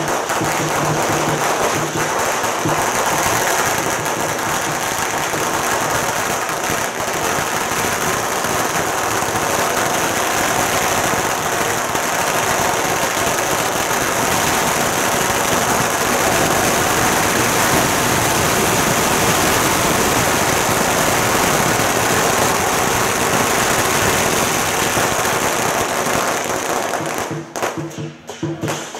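A long string of firecrackers going off in one unbroken, rapid crackle of small bangs, which cuts off suddenly near the end.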